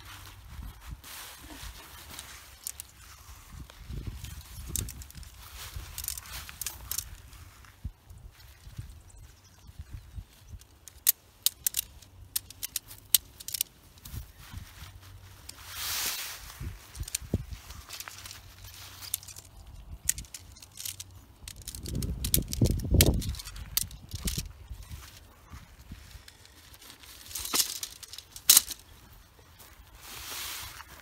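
Nylon tent fabric rustling and crinkling as the tent is taken down and gathered up, with scattered sharp clicks and clinks from the stakes and poles, and a low muffled thump about three-quarters of the way through.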